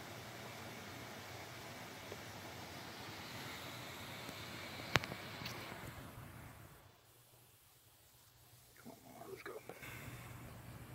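Steady faint hiss with a low hum and a single sharp click about five seconds in. It goes quieter, then faint handling rustles come in near the end as a snake is lifted from a plastic tub.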